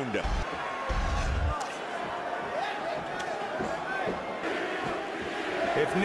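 Arena crowd noise: a steady mass of voices and cheering from a large crowd, with a brief low rumble about a second in.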